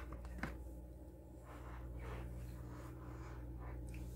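Melt-and-pour soap bar being worked free of a silicone mold: two light clicks near the start, then faint soft rubbing and scraping of the soap against the flexing silicone, over a steady low hum.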